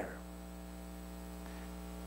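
Steady electrical mains hum: a low, even hum with a faint stack of higher overtones above it.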